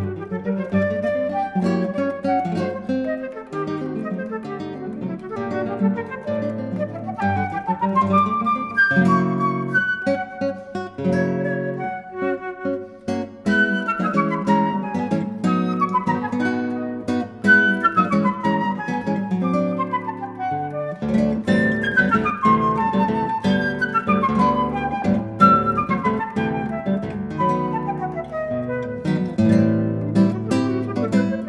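Flute and classical guitar duo playing a fast chamber-music movement: quick flute lines over plucked guitar. There are repeated falling runs through the second half, and the guitar's low notes grow fuller from about two-thirds of the way in.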